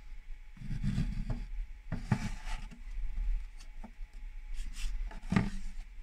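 A hand-held 3D-printed plastic model cabin being handled: small scattered clicks and rubs of plastic, with a few low handling bumps, over a steady low hum.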